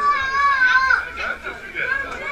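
Children's voices: one high-pitched child's voice calling out loudly in the first second, then lighter chatter.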